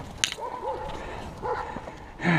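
Trek Stache 5 mountain bike rolling over a grass trail, a low steady rumble with one sharp click about a quarter second in, and a few faint short high-pitched cries.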